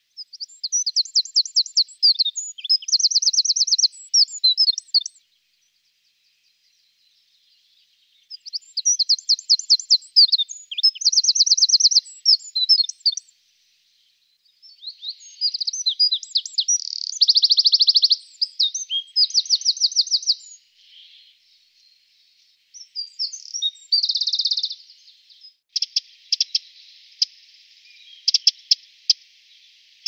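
Eurasian wren (Troglodytes troglodytes) male singing: loud, high, rapid song phrases of about five seconds, packed with fast trills, repeated four times with short pauses between. Over the last few seconds a series of sharp ticking calls.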